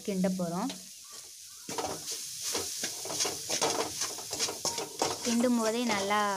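Metal spatula stirring and mashing boiled potatoes into a frying masala in an aluminium kadai: a quick run of scraping strokes against the pan from about two seconds in, with sizzling underneath.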